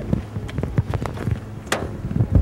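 Footsteps on pavement, then a car door unlatched and pulled open, with a sharp click of the latch near the end.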